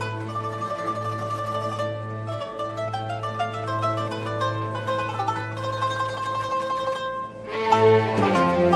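Arab orchestra playing a song's instrumental introduction in an old live recording: a melody of quick plucked-string notes over a steady low hum. Near the end the full ensemble with bowed strings comes in loudly.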